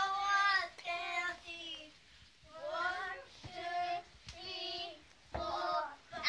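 Children singing together, a run of short held notes in phrases separated by brief gaps.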